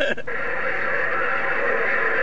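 President HR2510 radio on 27.085 MHz giving a steady hiss of band static from its speaker, after a voice cuts off right at the start.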